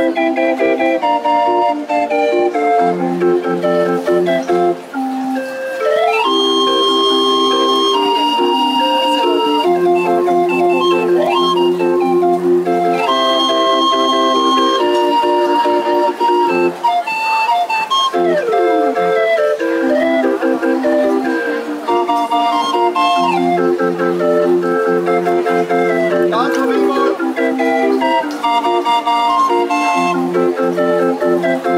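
Raffin hand-cranked barrel organ playing a pop-tune arrangement: sustained pipe notes over a repeating bass-and-chord accompaniment.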